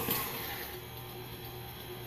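Tilt-head electric stand mixer running steadily, its motor humming as the beater turns through wet brownie batter.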